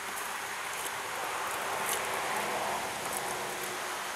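Steady rushing of a small stream or cascade of water, an even hiss without pitch.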